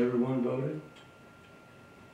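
A click, then a brief word or two from a voice over a room PA, lasting under a second, followed by quiet room tone with faint ticks.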